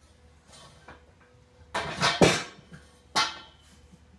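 Metal conduit knocking and clattering as it is lifted and handled: a quick cluster of knocks about two seconds in, then one more about a second later.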